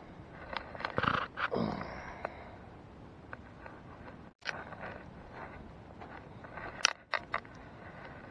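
Handling noise of sharp clicks and knocks, with a cluster near the end as a plastic tackle box is handled. About a second and a half in there is a brief falling tone.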